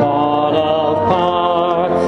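A slow hymn sung by voices, long held notes with vibrato, over an instrumental accompaniment.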